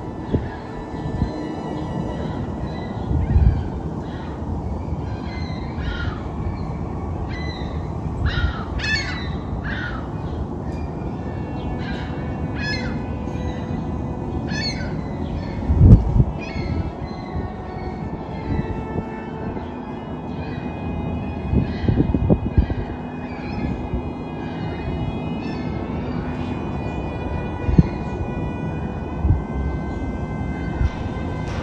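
Small birds chirping in quick short calls, busiest in the first half, over a steady low rumble of city background noise. A few dull low thumps break through, the loudest about halfway through.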